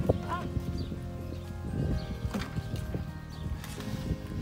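Background music, with irregular wooden knocks and clatter as a wooden seedbed frame is set down and shifted on a wheeled wooden cart.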